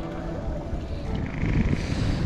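Wind buffeting the microphone, an uneven low rumble, with a faint hiss rising near the end.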